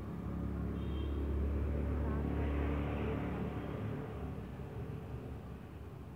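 Low rumble that swells over the first few seconds and then eases off.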